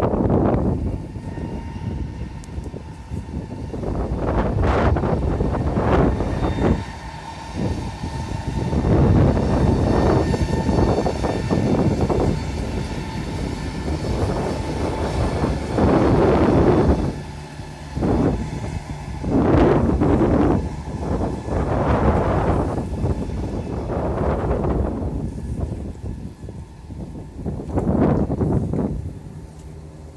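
EP20 electric locomotive with the 'Strizh' express train passing: a loud, noisy rush of the train that swells and fades several times.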